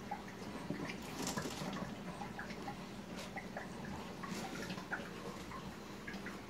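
Reef aquarium water trickling and dripping as it circulates through the tank and sump: a low, steady wash with many small scattered drips.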